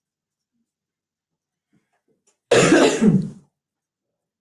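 A person clearing their throat once, a short two-part burst about two and a half seconds in, after near silence.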